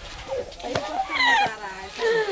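A woman's excited, high-pitched voice exclaiming in greeting during a hug, falling in pitch about a second in, after a brief knock.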